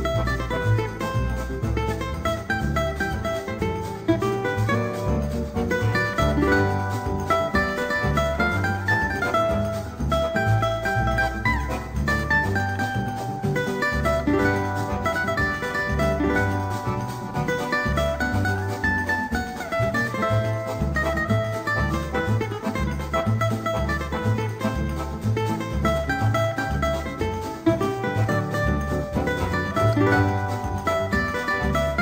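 Cavaquinho playing a fast samba melody in quick picked runs, backed by a small band with a steady bass pulse, in a 1959 recording.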